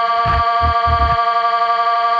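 Music: a sustained chord held steady, with a few heavy low drum hits in the first second or so that then drop out.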